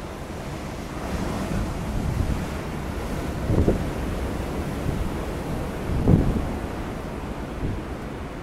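Waves washing on a pebble storm beach, with wind buffeting the microphone, in a continuous rough rush that swells twice, about halfway in and again near three quarters of the way through.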